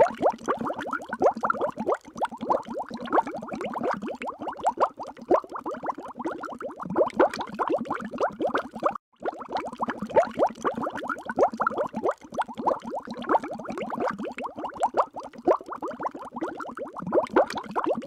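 Underwater bubbling sound effect: a dense stream of small rising bubble plops. It cuts out briefly about halfway through, then starts again.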